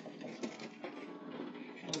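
Low, faint voices with a few light knocks and scrapes from a heavy wheeled load being tipped onto its side by hand.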